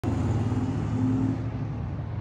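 A car engine running steadily with a low hum.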